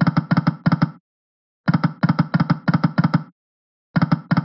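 Reel sound effects of the EGT 5 Burning Hot video slot: a short rattle of clicks as each reel stops in turn, about three a second. They come in runs of five, one run per spin, with a brief gap between spins.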